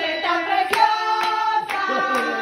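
A small group singing a birthday song together, with hands clapping along about twice a second.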